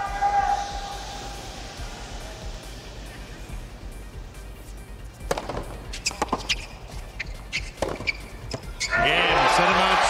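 Tennis ball struck with rackets in a short rally on a hard court: a few sharp pops over a hushed stadium crowd. About a second before the end the crowd erupts in loud cheering as the match point is won.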